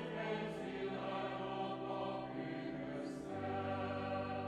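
Choir singing a slow sacred piece a cappella in held chords, the harmony shifting every second or so.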